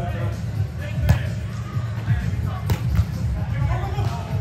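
A volleyball struck by hands during a rally: two sharp slaps, about a second in and near three seconds, over steady background music with a heavy bass and players' voices.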